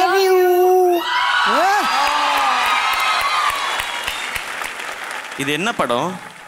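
A toddler's voice holds one long note into a microphone for about a second, then a large audience cheers and applauds for about four seconds, with a few whoops. A man's voice comes back in near the end.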